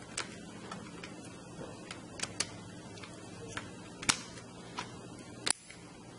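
Scattered small plastic clicks and taps as LEGO EV3 parts are handled and a sensor cable's plug is pushed into its socket, with the sharpest clicks about four and five and a half seconds in.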